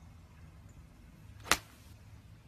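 Golf iron striking a ball off the turf in a full swing: one sharp crack about one and a half seconds in, with a brief swish of the club just before it.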